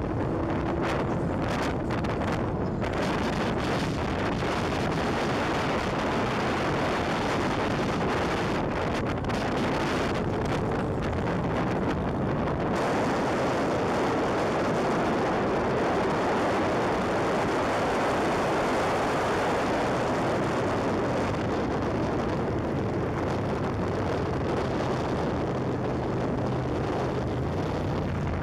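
Motorcycles riding at highway speed, recorded from a moving bike: a steady rush of wind on the microphone over the running engines and exhaust.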